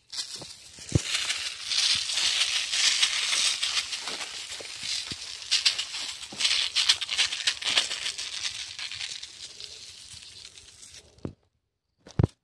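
Urea fertiliser granules pouring and pattering onto dry leaf litter: a dense, rattling hiss of countless small impacts that swells and fades, stopping suddenly about eleven seconds in.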